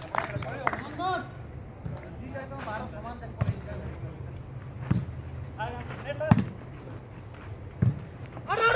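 A volleyball being struck by hand during a rally: sharp slaps about a second and a half apart, the loudest a little after six seconds in, with players' short distant shouts between the hits.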